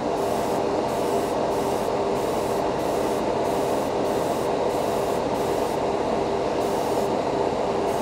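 Gravity-feed airbrush spraying silver lacquer in repeated short hissing bursts as the trigger is worked on and off, over the steady hum and rush of a spray booth exhaust fan.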